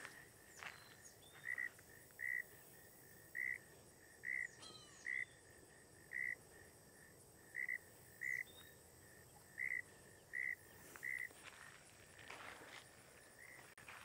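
Faint swamp insects: a short, evenly pitched chirp repeating about once a second, over a thin, steady, high insect hum, with a few faint bird whistles.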